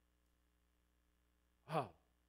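Near silence: room tone with a faint steady hum, broken near the end by a man's short exclamation, "oh wow".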